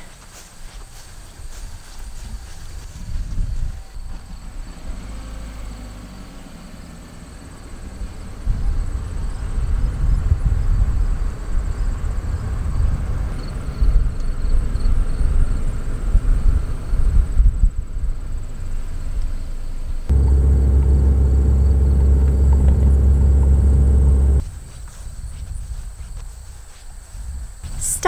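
A car driving along a narrow paved road: uneven low road and wind rumble that builds about eight seconds in, then a steady low drone for about four seconds that starts and stops abruptly.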